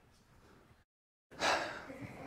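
Faint room sound, then the microphone feed cuts out to dead silence for about half a second before coming back with a sudden loud breath-like rush of noise that quickly fades.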